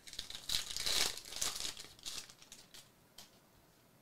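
Shiny foil wrapper of a Panini Prizm football card pack being torn open and crinkled by hand. It is loudest about a second in and dies away after about two seconds.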